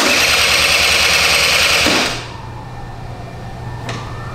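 Electric starter of a 1995 Honda SR50 Elite scooter cranking its two-stroke engine for about two seconds without it catching, then released. The engine won't fire, which the owner puts down to a sudden loss of spark, perhaps a fouled spark plug.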